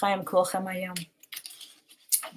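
A woman speaking for about the first second, then a few faint, light clicks, like keys being tapped.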